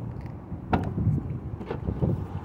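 Wind rumbling on the microphone, with two soft knocks about a second apart.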